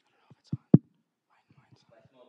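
A microphone being handled: two sharp thumps about a quarter second apart, near the start, with faint low voices around them.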